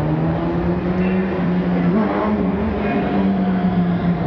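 Low bowed cello notes, held long and slow, stepping up in pitch about halfway through, heard over a thick noisy background in a rough live recording.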